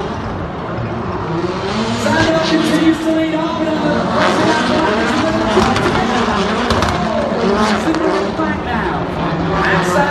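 Several Global Rallycross Supercars racing, their turbocharged engines revving up and dropping back again and again through the gears.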